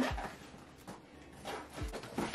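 A cardboard shipping box being opened and handled on the floor: faint rustling with two dull low thumps, one just after the start and one near the end.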